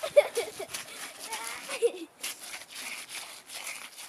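Indistinct voices over a dense run of rustling, clicking noises.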